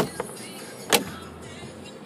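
Plastic glove box lid and latch being worked by hand: a sharp click at the start, a lighter one just after, and a loud sharp click about a second in as the latch catches.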